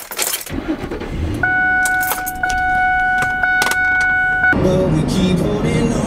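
Keys jangling as a car is started, its engine rumble rising. A steady electronic warning tone from the car sounds for about three seconds, with a few clicks over it, and cuts off as music begins near the end.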